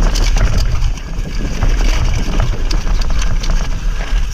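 Mountain bike riding down rocky dirt singletrack: tyres rolling over rock and gravel, with frequent short rattles and knocks from the bike, and wind buffeting the microphone.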